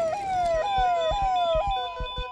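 Ambulance siren wailing in rapid cycles, about two a second, each one jumping up in pitch and then sliding down. A steady high electronic tone joins about a third of the way in.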